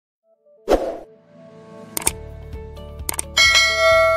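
Short logo intro jingle made of ringing chime-like tones. A hit comes just under a second in, sharp clicks follow around two and three seconds in, and a bright bell-like ding near the end rings on.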